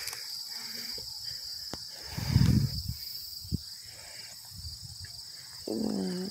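Insects chirring in a steady high-pitched drone, with a brief low rumble about two seconds in.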